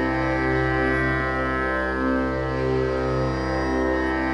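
Steady droning music with many overtones held at fixed pitches, swelling and fading slowly, the backing of a mantra recording.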